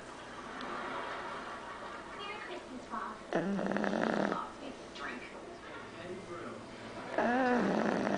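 Boston terrier snoring in its sleep: two loud snores, about three and a half seconds in and near the end, each lasting about a second.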